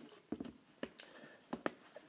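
A handful of faint, short clicks as a screw cap is twisted back onto a plastic eggnog bottle.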